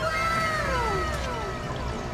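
A cat's long meow, falling in pitch over about a second and a half, over a steady low hum.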